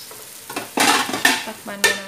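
Wooden spatula stirring and scraping chicken and potato chunks frying in a large aluminium pot, with sizzling. Near the end there is a sharp metallic knock as the aluminium lid goes onto the pot.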